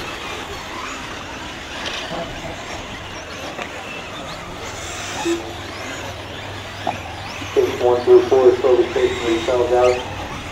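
Electric RC truggies running on a dirt track: a steady mix of tyre and drivetrain noise with faint rising and falling motor whines. A voice starts speaking about three-quarters of the way through.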